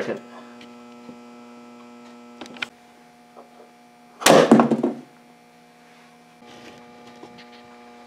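Steady electrical mains-type hum from the bench rig, with a faint click about two and a half seconds in. About four seconds in comes one loud, sharp crash that dies away within a second: a homemade ten-stage coil gun firing its 18.5 g projectile with 300 volts on its IGBT stages.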